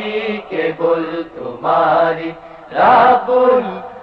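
A voice singing a Bangla Islamic hamd, a devotional song in praise of God, in drawn-out, chant-like phrases over a steady held low tone.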